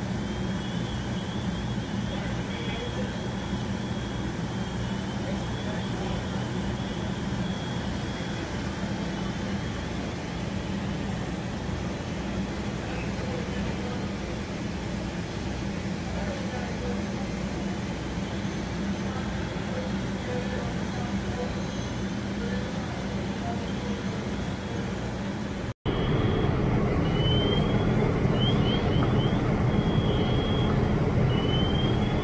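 Fire truck engines running steadily: a constant low drone with repeated faint high chirps over it. After a brief dropout near the end the drone is louder.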